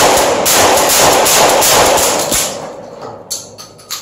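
Kel-Tec KSG 12-gauge pump-action shotgun firing the last shots of a rapid string, the blasts running together into one loud, rough din that dies away over the last second and a half. A few light clicks follow near the end.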